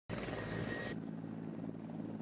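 Mi-24 attack helicopters running on the ground, a steady low engine and rotor hum. A high hiss and thin whine on top of it cut off abruptly about halfway through, leaving the low hum.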